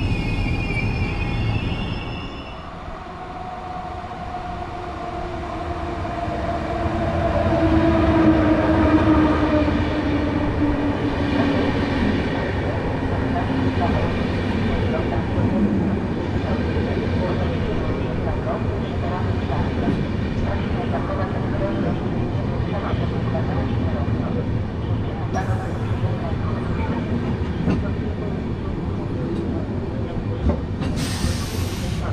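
A train running through the station: a motor whine falls slowly in pitch as the sound builds and peaks about eight seconds in, then gives way to a steady rumble of wheels on rail with scattered clicks. A brief high squeal comes at the start.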